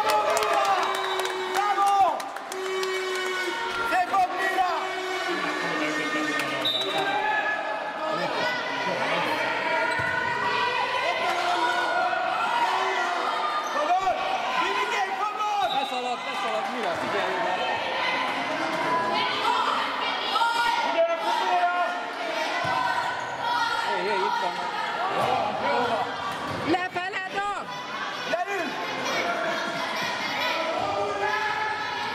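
A handball bouncing on the sports hall floor as the players dribble and pass, among overlapping children's shouts and calls that echo around the hall.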